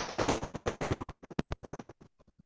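Choppy, crackling bursts of noise coming through an online call, a rapid irregular stutter of short clicks and fragments from a participant's open microphone.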